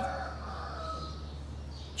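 A faint, drawn-out bird call that fades out about a second in, over a steady low hum.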